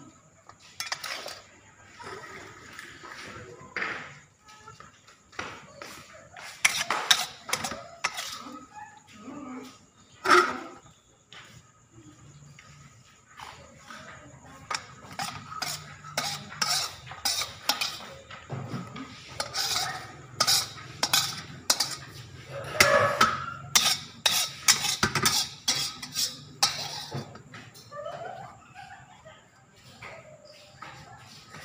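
Metal spatula scraping and knocking against a wok as sauce is stirred and scooped out. The strokes are irregular and sharp, and they come thickest and loudest in the second half.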